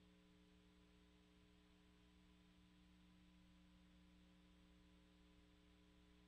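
Near silence: a faint steady hum with hiss, the background noise of the recording.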